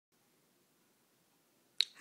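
Near silence, then a single short, sharp click just before the end.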